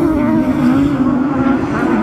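Autograss special racing buggies' engines running under power on a dirt oval, a continuous drone whose pitch wavers slightly as the cars race.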